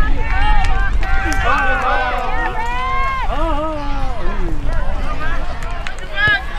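Several people shouting and calling out at once from the sidelines of a youth soccer match, voices overlapping, with some long drawn-out calls.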